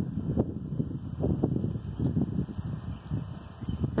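Low, irregular rumbling and bumping noise on a phone's microphone, with no clear bird call above it.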